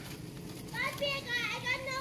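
A child's high-pitched voice talking, quieter than the adult speech around it, starting a little under a second in.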